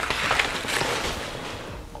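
Brown kraft packing paper rustling and crinkling as it is pushed aside, a crackly rustle that fades away over two seconds.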